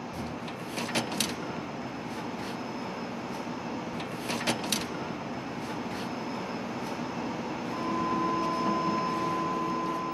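Steady workshop background noise with a few light clicks and knocks from cladding parts being handled on a large diesel engine that is stopped for dismantling. A steady hum of two tones comes in near the end.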